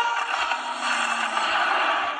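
Animated-film sound effects playing from laptop speakers: a dense rushing noise with no bass, and a brief low tone about halfway through.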